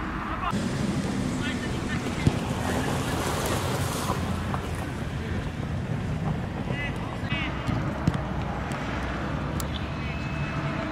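Wind buffeting the microphone over the background voices of players on the pitch, with sharp thuds of a football being struck, one about two seconds in and another about eight seconds in.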